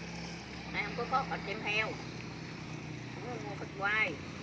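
A motor vehicle engine's steady low hum, fading after about halfway, under faint chatter of people talking, with a voice rising just before the end.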